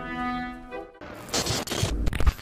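A held orchestral chord fades out over the first second. After a brief gap, a harsh burst of crackling, static-like glitch noise starts.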